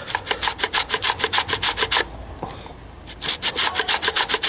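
An orange being grated against a metal box grater: quick rasping strokes, about five a second. They stop for about a second just past the halfway mark, then start again.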